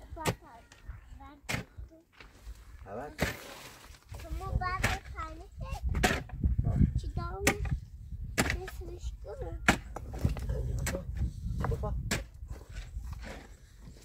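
Stones clacking against one another as loose rocks are picked up and set down, about one sharp knock a second.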